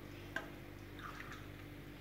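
Liquid poured from a cup into a pan of fried rice, faint and wet, with one light click about a third of a second in.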